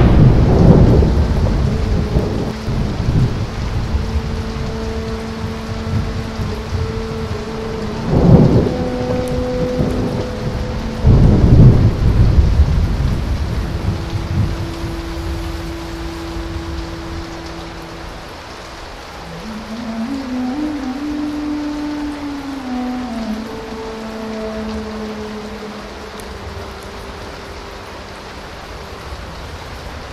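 Steady rain with rolls of thunder: a loud rumble at the start, then two more about eight and eleven seconds in, each dying away over a few seconds.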